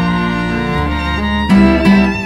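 String quintet of violin, viola, cello, double bass and guitar playing. Sustained bowed notes sit over a low bass line, and the notes change roughly every three-quarters of a second.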